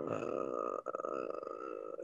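A man's drawn-out hum of hesitation while weighing a grade, its pitch wavering, with a brief break a little under halfway through.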